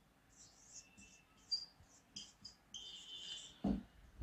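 Whiteboard marker squeaking against the board in short, irregular strokes as words are written, with one longer squeak near the end. A brief low thump comes just before the end.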